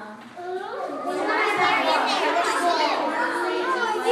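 Several young children talking and calling out at once, their voices high-pitched and loud from about a second in.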